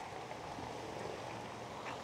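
Faint, steady outdoor background noise: an even low hiss with no distinct event.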